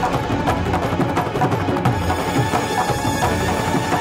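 Background score of a TV drama: music driven by a rapid, steady beat of percussion strikes over sustained tones.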